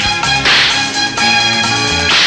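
Film background score with sustained notes, cut by a sharp whip-like swish about half a second in.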